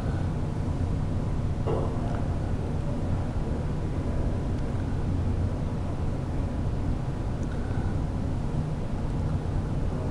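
Steady low hum and hiss of room background noise, at a constant level, with a faint brief sound about two seconds in.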